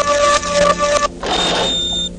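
Electronic machine sound effect of the mad doctor's molecule-mixing machine at work: a buzzing, stuttering two-note hum that stops about a second in. A hiss with a thin, high, steady tone follows.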